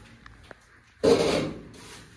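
A brief rubbing scrape about a second in, lasting under a second and fading out.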